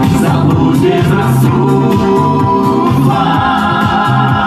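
A pop song sung by a mixed vocal group of men and a woman through a stage sound system, over a steady beat.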